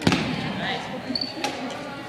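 Badminton rackets striking a shuttlecock twice, about a second and a half apart, each crack echoing in a large gym, with a short squeak of a shoe on the wooden floor just before the second hit.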